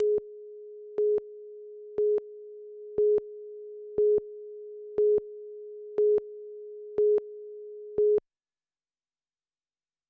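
Countdown-clock tone on a TV news tape: one steady tone with a louder beep on it every second, nine beeps, cutting off just after the ninth.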